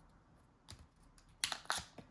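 Stiff card packaging tray of an AirTag four-pack being handled and folded by hand, giving a single light click and then a quick cluster of sharp clicks and crinkles about one and a half seconds in.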